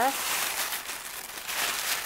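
Thin plastic bag crinkling and rustling as hands dig into it to pull out a folded linen tablecloth.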